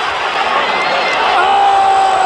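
Arena crowd noise, then, about one and a half seconds in, a spectator close to the microphone starts a long scream held at one pitch.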